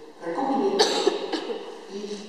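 A person coughing: one sharp cough a little under a second in, then a smaller one shortly after, amid speech.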